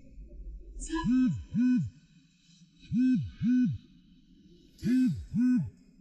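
Mobile phone buzzing on vibrate with an incoming call: pairs of short low buzzes, each swelling and fading, three pairs about two seconds apart.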